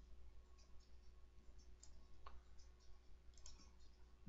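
Near silence, with a few faint computer mouse clicks; the clearest comes a little past halfway.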